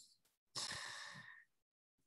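A person sighing: one breathy exhale into the microphone, starting about half a second in and fading out over about a second.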